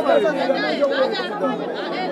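Several voices talking at once, overlapping chatter with no clear words.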